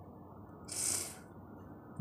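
A person drawing a quick breath, a soft hiss lasting about half a second near the middle.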